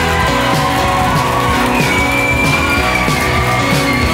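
Live rock band playing, with keyboards, saxophone, guitar, bass and a steady drum beat. A long high note is held from about halfway through.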